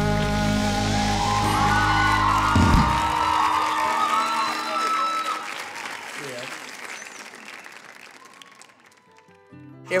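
The last strummed chord on an acoustic guitar and the singer's final held note ring out and stop about two and a half seconds in, then audience applause and cheering that fades away over the next several seconds.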